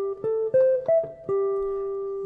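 Archtop jazz guitar playing single picked notes in a thirds-and-sixths interval exercise in G major: three notes climbing, then a drop to a lower note that is held and rings on.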